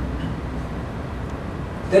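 A pause in a man's lecture speech, filled by a steady low room rumble, with his voice starting again at the very end.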